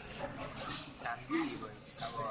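Only speech: indistinct voices talking, not picked up clearly enough to make out words.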